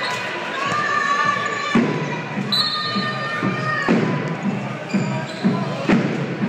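A football being kicked and passed on a sports-hall floor: a few sharp knocks, about two seconds apart, each ringing briefly in the hall. High squeaking tones come and go, over the murmur of the crowd.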